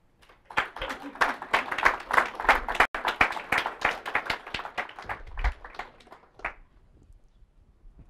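Audience applauding: a dense patter of many hands clapping that starts about half a second in and dies away after about six seconds.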